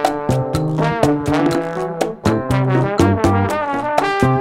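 Trombone playing a melody in a Latin band tune, over low notes and a steady beat.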